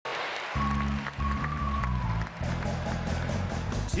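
Instrumental intro of a live band's pop song: a bass line and a held note, joined about halfway through by a steady beat of about four strokes a second.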